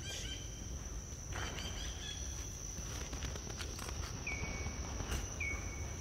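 Steady high-pitched drone of insects in the forest, over a low rumble. Near the end two short high whistled notes come about a second apart.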